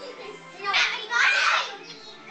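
Children shouting and shrieking as they play, with two loud bursts of yelling about halfway through, over faint background music.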